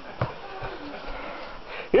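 A single light knock about a quarter second in, then soft handling and rustling noise as a cat is lifted and carried in a cloth tote bag.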